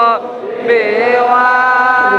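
A man's voice chanting Islamic devotional verse in long, drawn-out notes, with a brief dip in loudness just after the start before the chant picks up again.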